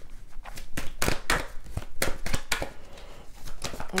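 Fortune-telling cards being shuffled by hand: an irregular run of sharp card flicks and snaps.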